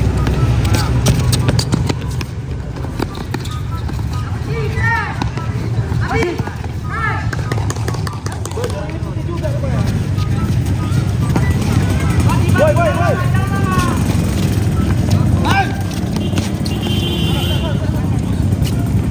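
Players shouting short calls to each other during a futsal game, several separate shouts, over a steady low hum. The ball is kicked and shoes scuff on the concrete court.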